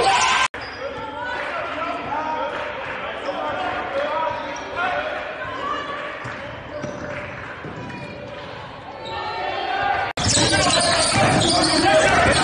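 Live game sound in a gym: a basketball being dribbled on the court, with players' and spectators' voices echoing in the hall. The sound cuts abruptly about half a second in and again about ten seconds in, and the middle stretch is quieter.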